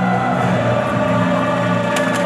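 Music with a choir singing long held notes over a low sustained accompaniment.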